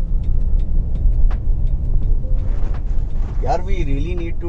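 Hyundai Alcazar SUV driving, heard from inside the cabin: a steady low rumble of road and engine noise with a few faint ticks. A man's voice starts near the end.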